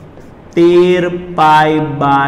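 A man's voice holding long, drawn-out syllables at a steady pitch, starting about half a second in, with a short break in the middle.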